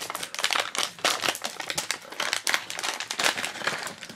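A silver foil blind-box pouch being opened and crinkled by hand, a dense run of irregular crackles.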